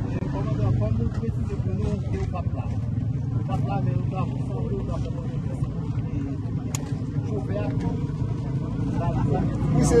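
A steady low engine rumble from a running vehicle, under indistinct men's voices.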